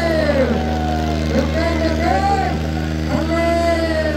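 Two tractor engines, a Swaraj 855 and a New Holland 3630, running steadily under load in a tug-of-war, under a loudspeaker announcer's long, drawn-out calls that slide up and down in pitch.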